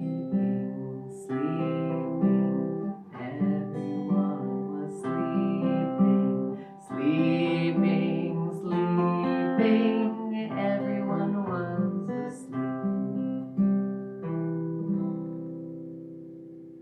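Acoustic guitar strummed, chords restruck about once a second; the last chord rings out and fades near the end.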